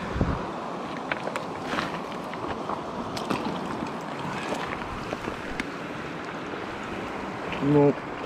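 Shallow stream running over a pebble bed: a steady rush of flowing water, with a few light clicks scattered through it and a low bump at the start.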